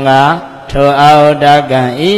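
A Buddhist monk's voice intoning a Pāli passage in a chanting recitation, in two phrases of long, level-pitched syllables with a short break a little under a second in.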